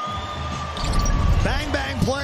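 Hockey TV broadcast audio: a deep low rumble swelling about a second in, under a thin steady tone. A man's voice comes in near the end.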